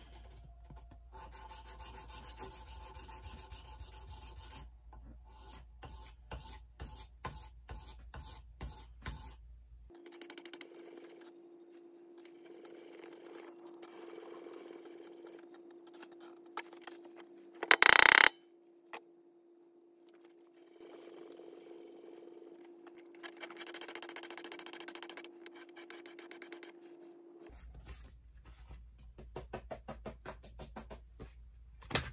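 Metal being sanded by hand on abrasive paper: quick, rhythmic back-and-forth scraping strokes, several a second. The strokes stop for a stretch in the middle, where a steady low hum runs instead and one brief, loud noise stands out, then the scraping strokes resume near the end.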